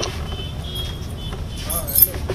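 Steady low rumble of background noise, with faint murmuring voices and a short wavering voice near the end.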